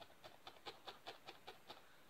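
A felting needle stabbing repeatedly through a tuft of wool into a foam sponge pad: faint, short pokes at an even pace of about five a second.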